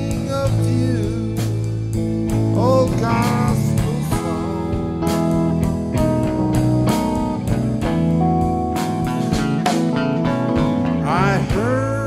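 Band playing a slow instrumental passage: an electric lead guitar plays bent notes over sustained keyboard and guitar chords, with a drum kit keeping a steady beat on the cymbals.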